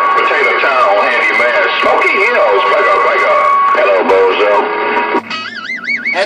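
CB radio speaker carrying garbled, overlapping voices over a steady whistling tone. About five seconds in, the whistle stops and a fast warbling tone sweeps up and down several times a second.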